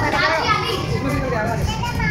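Children playing and calling out, several young voices overlapping without a break.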